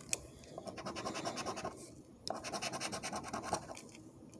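A coin scratching the coating off a scratch-off lottery ticket in quick rapid strokes, in two bouts with a short pause at about two seconds.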